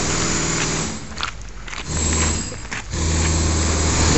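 Steady low hum of a motor running, like an idling engine, over a background hiss; it dips briefly twice.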